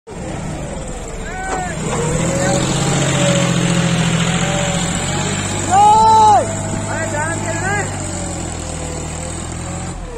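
John Deere 5105 tractor's three-cylinder diesel engine working hard under load as it pulls a loaded soil trailer up out of a muddy pit, running louder for a few seconds in the middle. Bystanders shout over it, with one loud shout about six seconds in and a few short calls after.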